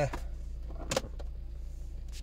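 A car glovebox lid pushed shut, latching with a single sharp click about a second in, over a steady low hum.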